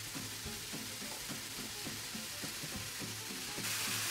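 Sliced mushrooms sizzling and crackling steadily in a frying pan over a gas flame, getting a little louder near the end.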